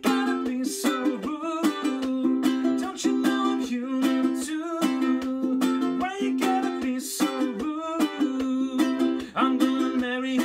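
Ukulele strummed in a reggae rhythm, with a man singing along over it.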